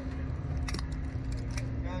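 Seat buckles on a slingshot ride's seats being unfastened: several sharp clicks, over a steady low hum.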